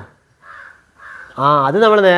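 A crow cawing twice, faint and hoarse, in a short pause. A man's voice then resumes talking loudly from just under halfway through.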